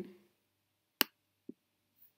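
A computer mouse button clicking once, sharply, about a second in, with a much fainter tick half a second later; otherwise near silence.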